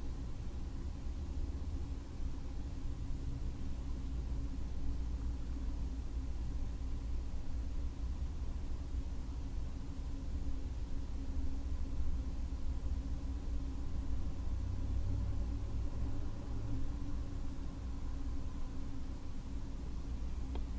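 Room tone: a steady low hum with no distinct sounds.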